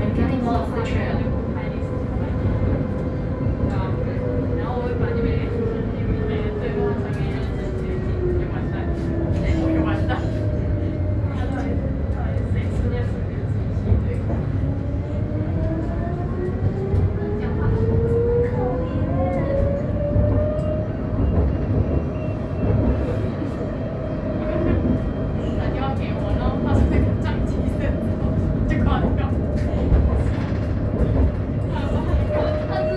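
Light rail tram heard from inside the car: a steady low rumble of the running gear, with the traction motors' whine falling in pitch over the first ten seconds as the tram slows. The whine then rises as it picks up speed and holds steady for the last part.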